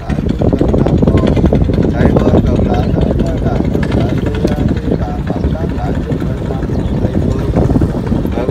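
Voices chanting a Buddhist prayer in a steady, unbroken flow, over a continuous low rumble.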